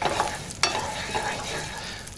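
Curry paste frying and sizzling in oil in a frying pan, with a wooden spatula stirring and scraping it around the pan; a couple of short scrapes stand out near the start and about half a second in.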